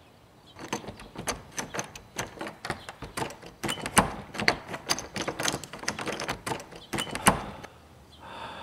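Doorknob and lock of a wooden door being worked: a fast, irregular run of metallic clicks and rattles lasting about seven seconds, with two louder knocks, one about halfway and one near the end.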